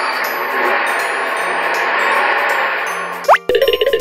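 Background music with a dense, shimmering chime-like sound effect that ends in a quick rising glide a little after three seconds in.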